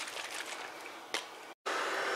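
Faint handling of damp sprayed gauze, then, after an abrupt cut about one and a half seconds in, a handheld craft heat tool of the hair-dryer type starts running, a steady blowing noise with a faint steady whine, drying the wet spray ink on the gauze.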